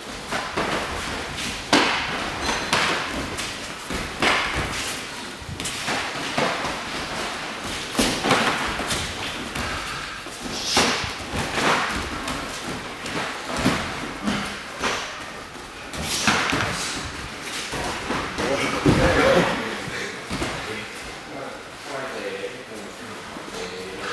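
Full-contact karate sparring: irregular thuds of punches and kicks landing and feet striking the mats, with voices shouting at times.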